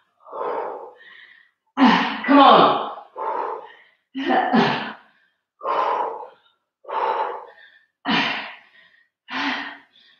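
A woman's effortful, partly voiced breaths and grunts, one burst about every second, in time with side-to-side twists of a core exercise.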